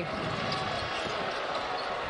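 Basketball arena ambience: steady crowd noise, with the ball being dribbled on the hardwood court.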